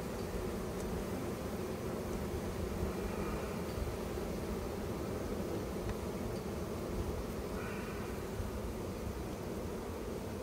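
Honeybee swarm buzzing steadily on a hive box as the bees march in, over a low background rumble.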